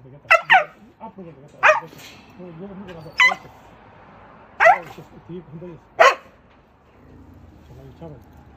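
A dog barking in sharp single barks, six in all, the first two close together and the rest about a second and a half apart. Low voices murmur between the barks.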